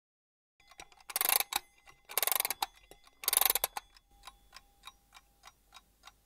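Ticking clock sound effect, about three ticks a second, over three louder short bursts of noise about a second apart.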